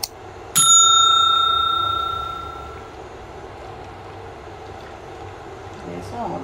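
A stainless steel cooking pot struck once by the stirring spatula about half a second in, ringing with a clear metallic tone that fades away over about two seconds.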